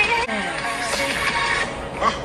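Music with a singing voice, steady throughout.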